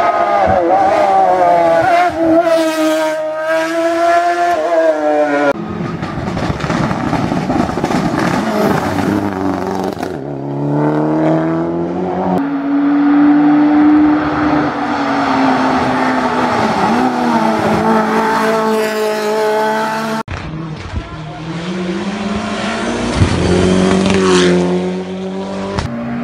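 Hill-climb race cars driven hard one after another, engines revving high, dropping in pitch at each gear change and climbing again. The sound cuts sharply from one car to the next about five, ten and twenty seconds in.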